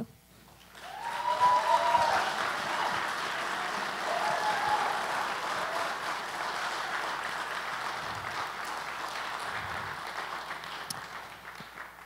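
Church congregation applauding, rising about a second in, holding steady, then tapering off near the end, with a brief cheer near the start.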